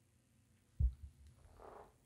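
Near silence broken by a single dull, low thump a little under a second in, then a faint soft breath just before speech resumes.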